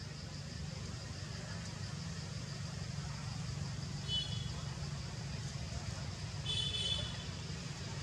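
Outdoor background ambience: a steady low rumble, like distant traffic, under a constant high-pitched whine. Two short high-pitched chirps stand out, about four seconds in and again between six and seven seconds.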